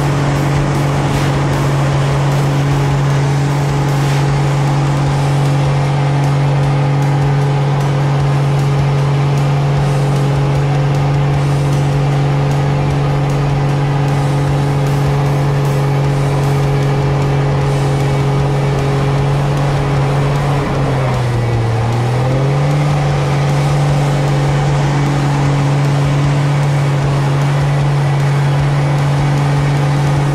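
Pitts Special biplane's engine and propeller heard from inside the cockpit, a loud steady drone at one pitch through aerobatic manoeuvres. About 21 seconds in, the pitch sags for a moment and then climbs back.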